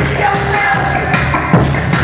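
Loud electronic music with a fast, steady beat, played live through PA speakers.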